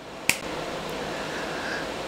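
A sharp click, then a steady hiss-like handling noise as an RTX A2000 graphics card is taken apart by hand.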